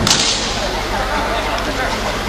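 A single sharp whip-like crack right at the start, from the wushu performer's move, then a steady hiss and low hum.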